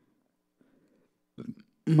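A pause in a man's speech: near silence, then a brief mouth or throat sound from the speaker about one and a half seconds in, and his speech picks up again just before the end.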